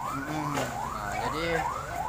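Emergency vehicle siren in a fast yelp, its pitch rising and falling about three times a second.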